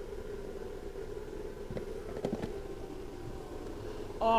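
Steady hum of a big-box store's ventilation, with a few faint clicks and knocks about two seconds in as the plastic drill bit case is handled.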